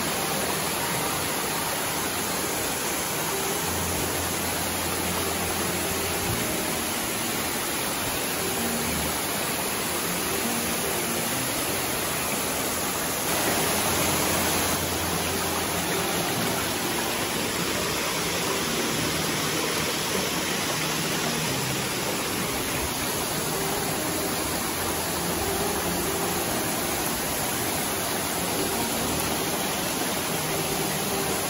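Steady rush of a small waterfall and the shallow mountain stream running over rocks below it, briefly a little louder about halfway through.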